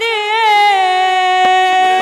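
A woman's voice singing a devotional hymn (bhajan) through a microphone, holding one long note that wavers at first and then settles steady.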